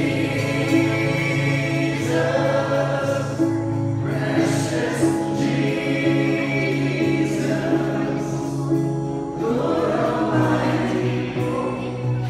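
Live worship music: voices singing a slow gospel song over acoustic guitars, with chords held long under the melody.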